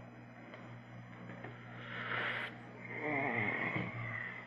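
A person breathing out hard or sniffing into a close microphone about two seconds in, then a short wordless voiced sound, like a sigh or a hum, near the end.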